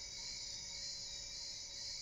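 Faint, steady high-pitched hiss, with a faint low hum underneath and no distinct event.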